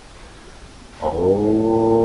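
A man's voice chanting a long, drawn-out "Om", beginning about a second in and held on one steady pitch, the opening syllable of a guru mantra.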